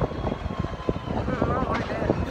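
Wind buffeting the phone's microphone: a low, irregular rumble.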